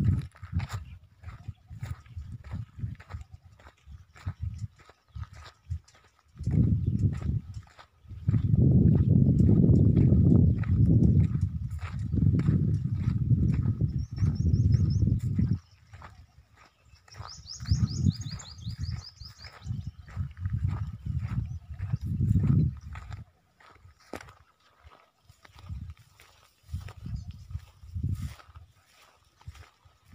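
Footsteps crunching through dry grass and stubble as a person walks across a field, with wind buffeting the phone's microphone in long, uneven low gusts.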